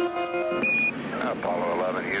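Soundtrack music breaks off, then a single short high beep, an Apollo Quindar tone keying a Mission Control radio transmission, followed by hissy, narrow-band air-to-ground radio voice.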